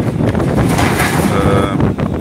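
Wind buffeting a phone's microphone in strong gusts, a heavy rumble with a rushing swell about a second in.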